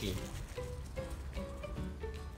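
Quiet background music: a simple melody of short notes.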